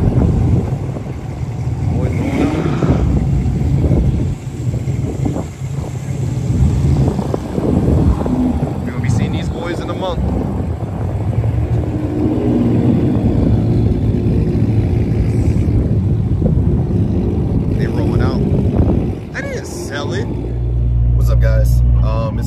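Several cars' engines running and pulling away, with a low wind rumble on the microphone.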